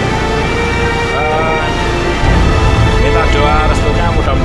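Background music with steady held notes, laid over voices calling out and a loud low rushing noise that swells about halfway through.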